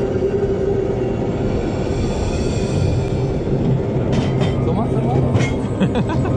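Spinning roller coaster car rolling along its steel track: a steady, dense rumble with a few sharp clicks in the second half.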